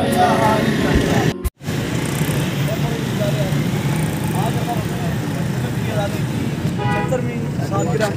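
Steady roadside traffic noise with people talking. There is a brief break to silence about a second and a half in, and a short vehicle horn toot about seven seconds in.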